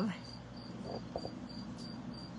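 A faint high chirp repeating evenly, about four times a second, over a low steady hum, with a couple of soft clicks about a second in.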